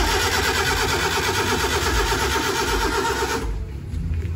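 Small pickup truck's starter motor cranking the engine with a fast, even rhythm, cutting off suddenly about three and a half seconds in.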